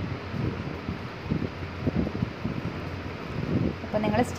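Fabric being handled and worked through a domestic sewing machine: soft rustling with irregular light knocks from the machine and fabric, over a faint steady low hum.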